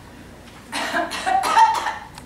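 A person making a few short, cough-like vocal bursts, starting just under a second in and running close together for about a second.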